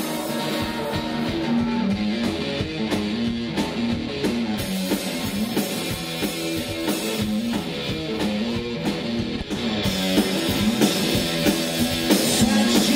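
Live rock band, an electric guitar playing a repeating riff over a drum kit, heard through the stage PA from within the crowd.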